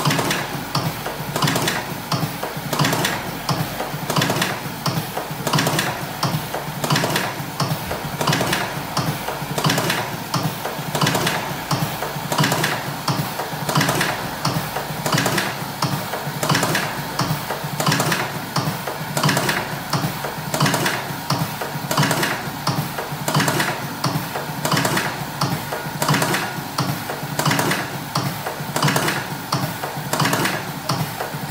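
Techmatik All in One 3.0 electric cigarette-rolling machine running continuously, filling and ejecting cigarette tubes. Its mechanism clatters in a repeating cycle about once a second over a steady low hum.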